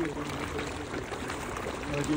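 Pond water splashing and churning as fish rise to food scattered onto the surface.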